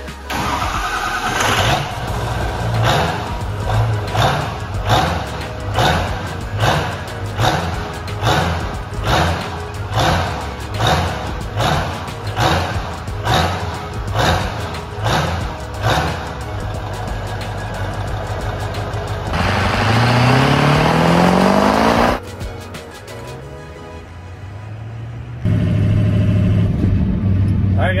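Music with a steady beat, then a 6.0 Powerstroke V8 turbo-diesel revving up in a rising pitch for about three seconds before it cuts off; near the end the engine runs steadily.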